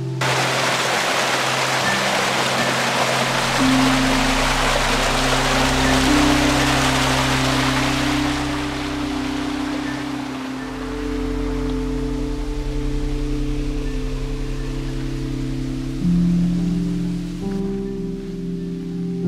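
Background music of slow, sustained chords with long held notes changing every few seconds. A loud hiss starts suddenly with it and fades out about halfway through.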